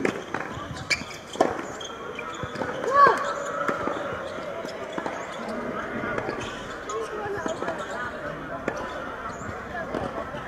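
Tennis ball strikes and bounces on a hard court, a few sharp knocks in the first second and a half, then a player's loud cry about three seconds in, followed by low voices.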